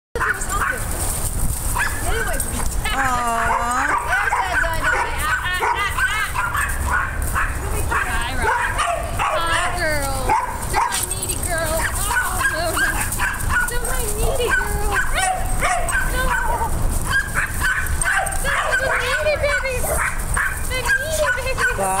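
Boxer dogs whining and yipping at play. Many short cries rise and fall and overlap all through, over a steady low rumble.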